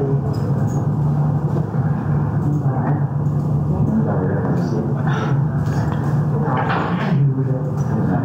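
A steady low hum with indistinct, low voices coming through now and then, about three, five and seven seconds in.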